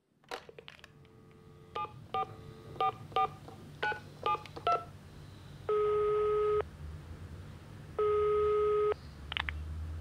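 Telephone handset lifted with a click, a number dialed in a quick run of push-button tone beeps, then the ringing tone of the call heard twice through the earpiece, each ring about a second long.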